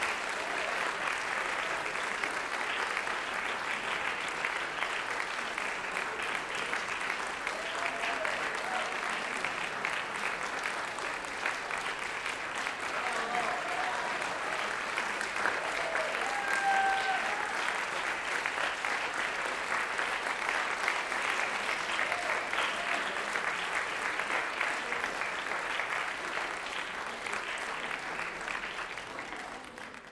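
Audience applauding steadily: a dense, even patter of many hands clapping that dies away at the very end.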